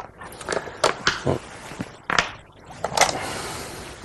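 Go stones for a demonstration board clattering and clicking as a hand picks through the tray of stones, with a few sharp knocks as pieces are taken up and set on the board, and a brief rustle near the end.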